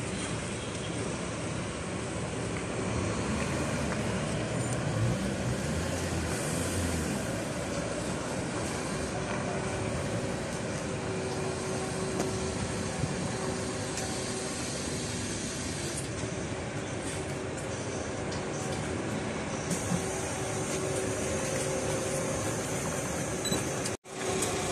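Large coach bus running as it drives slowly across a car park and turns in, a steady engine noise with a faint hum partway through.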